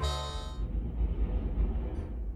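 A passing train rumbling low and steady, heard from inside a building, as the tail of a music chord fades out in the first half-second.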